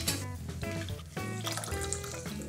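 Background music over a faint trickle of lime juice pouring from a hand-held lever squeezer into a glass measuring jug.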